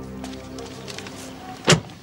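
Soundtrack music with held tones fading out, then a single sharp car door shutting near the end.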